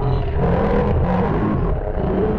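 Loud, heavily distorted and layered effects-edit audio, mostly a dense low rumble with wavering, smeared tones above it.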